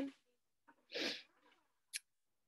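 A woman's voice trails off on a last word, then one short breathy puff or huff of air about a second in.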